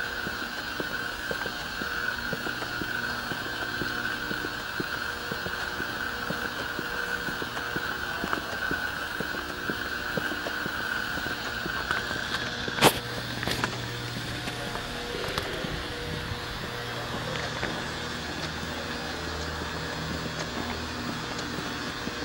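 Steady mechanical hum and noise of a large warehouse, with a high steady whine that stops about twelve seconds in. A single sharp click comes about thirteen seconds in.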